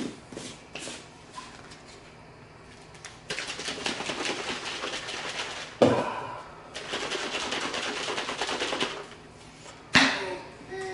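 A smoothie being mixed by shaking it hard in a shaker bottle. After a few light clicks there are two bouts of rapid rattling, each about two seconds long, with a sharp knock between them.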